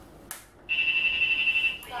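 Uniden R7 radar detectors sounding their K-band alert: a short click, then a steady high tone from about two-thirds of a second in. They are alerting to a K-band signal at 24.092 GHz.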